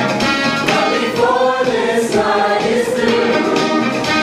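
A show choir of mixed boys' and girls' voices singing together, with instrumental backing and a steady beat.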